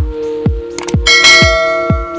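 Subscribe-animation sound effect: a couple of quick clicks, then a bright bell ding about a second in that rings on and fades. Underneath runs background music with a steady beat.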